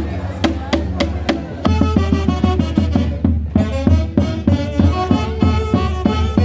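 Andean folk orchestra (orquesta típica) starting a tune. A few sharp drum strokes come first, then about a second and a half in the saxophone section enters with the melody over a steady beat from bass drum and a stick-struck drum.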